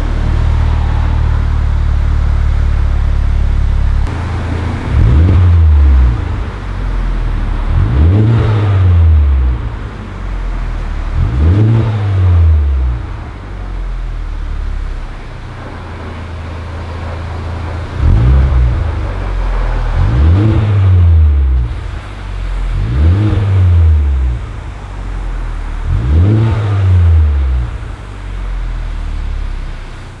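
A Honda Civic Type R's 2-litre VTEC turbocharged four-cylinder engine is heard through its tri-exit exhaust. It idles at first, its note dropping about four seconds in. It is then revved in seven short blips, each rising and falling back to idle: three, a stretch of idle, then four more.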